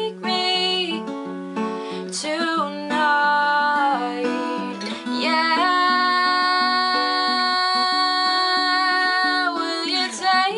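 A woman singing over her own acoustic guitar accompaniment. In the second half she holds one long note.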